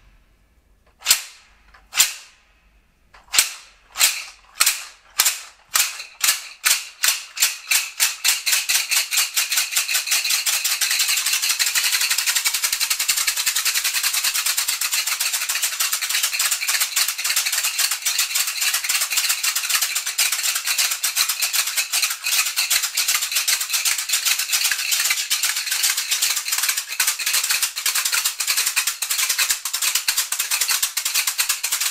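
A pair of wasamba rattles, West African stick rattles strung with calabash discs, played with a sharp clack. Single clacks about a second apart speed up over the first eight or nine seconds into a continuous fast rattle that carries on to the end.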